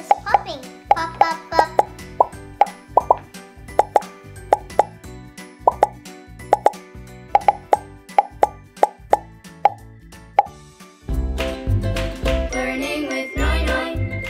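A quick, irregular run of short pops, about two or three a second, as the bubbles of a silicone pop-it fidget toy are pushed through, over light children's music. About eleven seconds in, the pops stop and a loud musical jingle with voices takes over.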